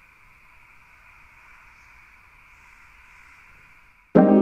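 Faint, steady hiss with no tune, beat or distinct events.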